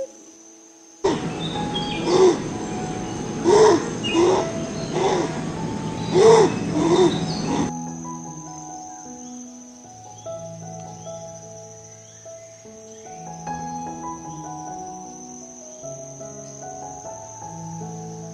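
Common cuckoo calling repeatedly over an outdoor field recording from about a second in until nearly eight seconds, each call a short pitched note with a rise and fall. Soft, calm music plays throughout over a steady high whine, with a few faint chirps later on.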